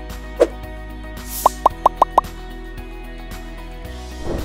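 Background music under cartoon-style pop sound effects: one pop about half a second in, a brief whoosh, then a quick run of five rising pops at about six a second.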